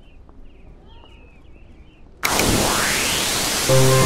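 Faint high chirps over a quiet background, then loud television static hiss cuts in abruptly about halfway through, with a rising whoosh sweeping up through it. Synthesized music notes start just before the end.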